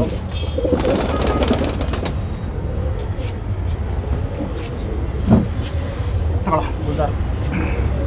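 Tumbler pigeon flapping its wings in a brief flurry of quick strokes about a second in, over a steady low rumble; a few short voice sounds follow later.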